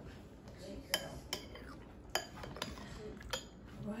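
A metal spoon clinking against a stainless steel food jar, about five separate light clinks.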